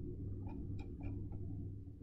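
A run of faint, short ticks a few tenths of a second apart from a computer mouse as a web page is scrolled, over a steady low electrical hum.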